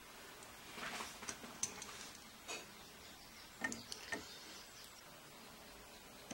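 Soldering header pins onto a circuit board: a handful of faint, light clicks and taps from the soldering iron and solder against the pins and board, scattered over a quiet room hiss.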